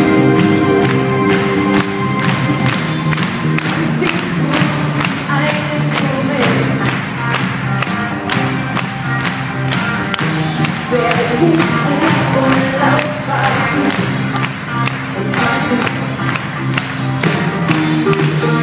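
Live pop-rock band playing a song with a steady beat, heard from within the crowd in a large concert hall.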